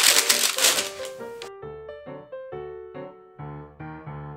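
Baking parchment paper crinkling as it is pressed and folded around a springform cake pan, cutting off abruptly about a second and a half in. Background music with clear sustained notes carries on underneath and through the rest.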